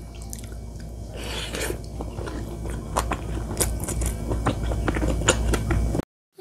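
A wooden spoon mixing sticky, sauce-soaked rice in a ceramic bowl: a run of small, irregular wet clicks and squelches with the odd scrape, over a steady low hum.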